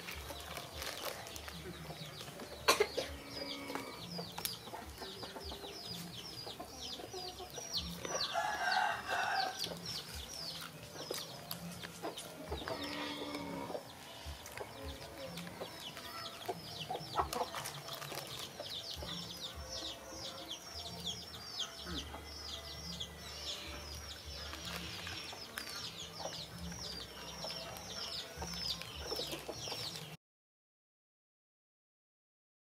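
Birds chirping rapidly and without pause, many short falling chirps a second, with two louder calls about eight and thirteen seconds in. A sharp knock near three seconds in.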